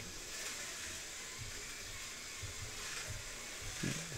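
Slot car running laps on a home road-course track, heard faintly as a steady hiss over low room noise.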